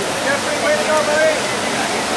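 Steady rush of ocean surf breaking and whitewater rolling in.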